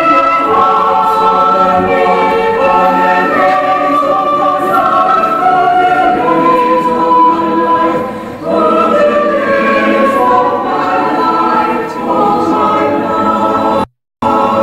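Church congregation singing a hymn together in long, held notes, with a short breath between phrases about eight seconds in.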